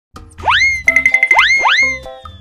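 Playful background music with cartoon sound effects: three quick rising whoops, and between the first two a fast pulsing high tone, about ten pulses a second.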